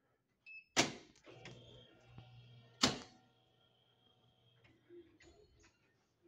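A short electronic beep, then a loud metallic clack as a push-bar door is opened, followed by a steady electric buzz while the door is released. A second loud clack comes about two seconds after the first. Softer clicks and footsteps follow near the end.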